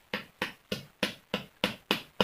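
A hand tool knocking against wood at ground level: rapid, evenly spaced sharp knocks, about three a second.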